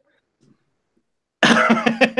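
Near silence for over a second, then about a second and a half in a man coughs loudly.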